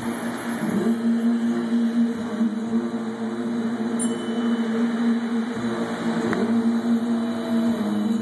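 Fountain show music over outdoor loudspeakers holding one long sustained chord, mixed with the steady rush of the fountain's water jets.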